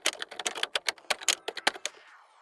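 Typing sound effect: a fast run of key clicks, about ten a second, that stops near the end.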